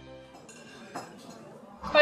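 Cutlery clinking lightly on a dinner plate, with a small click about a second in, as a music cue fades out; a voice starts abruptly near the end.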